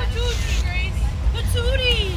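School bus engine and road rumble, a steady low drone heard inside the cabin, under girls' voices chattering.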